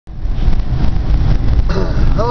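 Road noise inside a moving car on a wet road: a steady low rumble with tyre hiss. A man's voice begins near the end.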